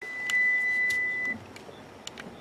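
A steady, single-pitched high electronic beep that holds for a little over a second and then cuts off.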